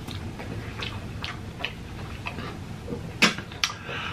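Close-miked chewing of a mouthful of curry, with soft wet mouth clicks scattered through it and two sharper smacks near the end.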